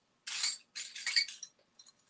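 Costume jewelry clinking and rattling as it is picked through by hand, in two short bursts, the first about half a second long, the second a little longer.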